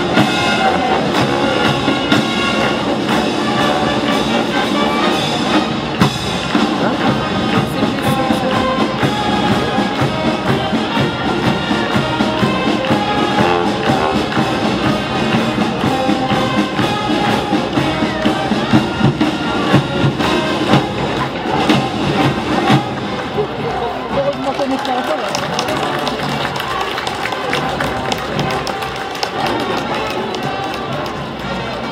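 Street brass band playing, with sousaphone and drums, over the chatter of a large crowd; the music grows a little quieter in the last few seconds.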